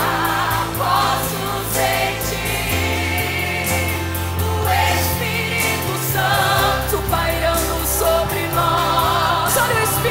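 Teen choir singing a gospel hymn in parts, held notes with vibrato, over an instrumental accompaniment whose low bass notes are held and change every couple of seconds.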